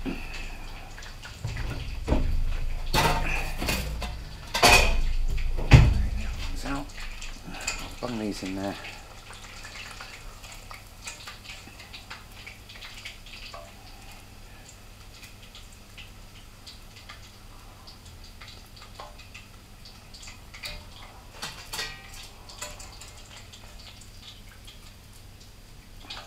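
Metal pots and pans clattering on a gas hob, with a heavy pan set down in several loud knocks and thumps in the first six seconds. After that come quieter, scattered clinks and scrapes of a metal utensil in a pan.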